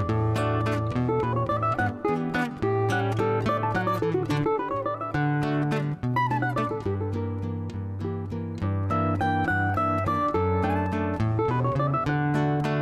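Cavaquinho playing a fast choro melody in quick picked runs that climb and fall, over a seven-string acoustic guitar's bass line and chords.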